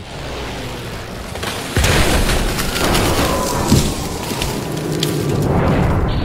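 Dramatic crash sound effect laid over background music: a low rumble, then a sudden heavy boom about two seconds in that carries on as a long rumbling crash with crackles and a slowly falling tone, cut off sharply at the end.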